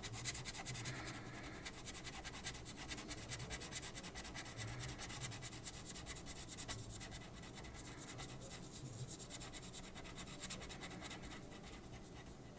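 Felt-tip marker scratching faintly on paper in quick, short back-and-forth strokes, colouring in a small area.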